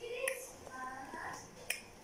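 A single sharp finger snap near the end, after short voiced sounds from a woman.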